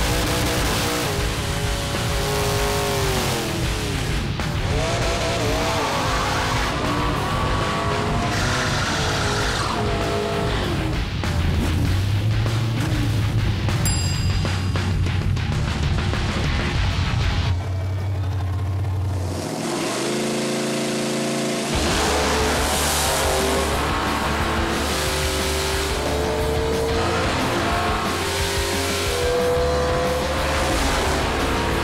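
Drag-race V8 engines, a nitrous LS-powered Mustang and a small-block Ford Thunderbird, running and revving at the starting line under a rock music bed. Near the end the engine pitch climbs in steps.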